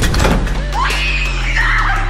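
A person screaming, several high cries rising and falling about a second in, over trailer music with a deep sustained bass.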